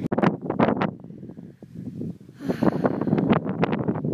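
Strong wind buffeting a phone's microphone in irregular gusts, with a brief lull about halfway through.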